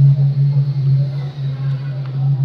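A loud, steady low hum with faint traces of other sound above it.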